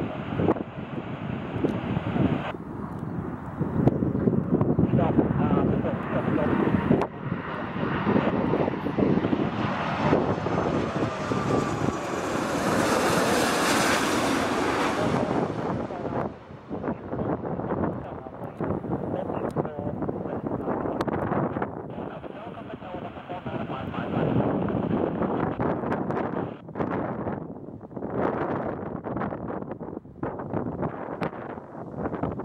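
Airbus BelugaXL's twin Rolls-Royce Trent 700 turbofans on landing approach. The jet noise swells to its loudest, with a high whine, as the aircraft passes overhead about halfway through, then eases off as it lands and rolls down the runway. Wind gusts buffet the microphone throughout.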